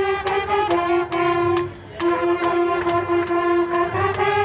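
School marching band playing: saxophones and brass hold long notes over a steady drum beat of about three strokes a second. The band breaks off briefly about halfway through.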